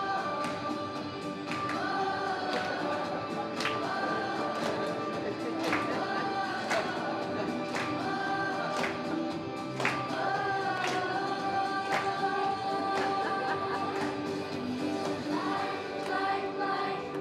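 A group of children singing an upbeat song over accompaniment with a steady beat, about one strong beat a second.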